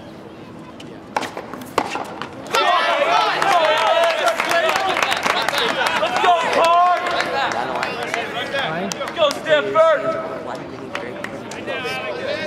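Two sharp tennis ball strikes off racket strings, under a second apart, then spectators shouting and cheering together at the end of a tiebreak point, loud for several seconds and easing off near the end.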